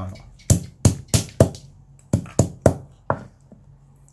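Green bird's eye chilies being crushed with a pestle on a thick wooden chopping board: about eight sharp thuds, coming in two quick runs of four.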